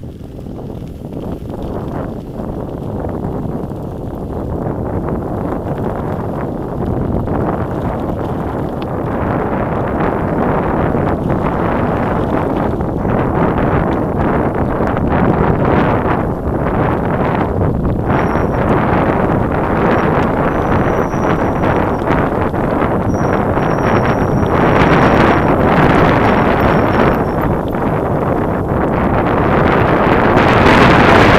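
Wind buffeting the microphone of a camera on a moving mountain bike, growing louder as the bike picks up speed, with the bike rattling and knocking over the rough track.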